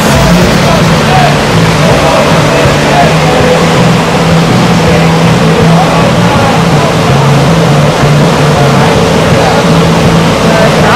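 Loud, steady rush of whitewater where the river channel pours over a standing surf wave. Under it run low tones that step between two pitches.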